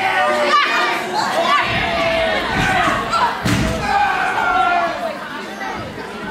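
A wrestler slammed onto the ring: a heavy thud of body on the mat about halfway through, with crowd voices and shouts throughout.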